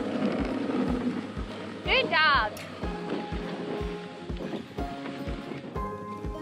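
Background music with a steady beat of about two thumps a second. About two seconds in, a short high cry glides up and then down.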